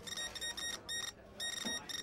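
Background music in a news-broadcast style: short, high electronic tones pulsing in a quick, ticking rhythm.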